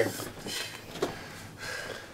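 Quiet room tone in a pause between speech, with a faint click about a second in.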